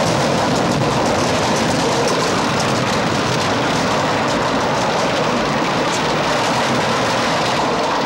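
A steady, loud rushing noise with no clear rhythm or pitch, stopping just after the end.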